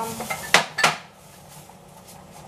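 Two sharp clinks of a crockery plate knocking against other dishes as it is taken out of a refrigerator, a third of a second apart, about half a second in.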